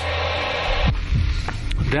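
Low, steady electronic hum under a hiss for about the first second, then the hiss drops away and slow, low throbbing pulses come in. This is a documentary's background sound design under night-vision footage.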